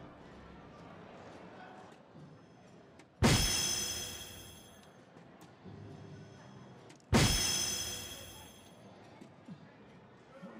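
Two darts hitting an electronic soft-tip dartboard, about three and seven seconds in. Each hit is a sharp strike followed by a ringing electronic hit sound from the machine that fades over a second or so; the hits register as single 16 and single 18.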